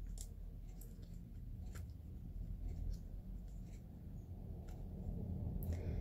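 A few faint, scattered metallic clicks and scrapes as a tiny rivet is fitted and clamped in a small metal mitre jig, over a low steady room hum.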